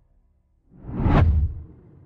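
A single whoosh sound effect that swells up a little over half a second in, peaks with a deep low rumble under a rising hiss, and dies away within about a second. It is the transition effect for the animated outro's text changing.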